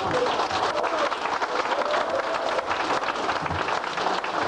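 Audience applauding, many hands clapping at once in a steady, dense patter, with a few voices calling out over it.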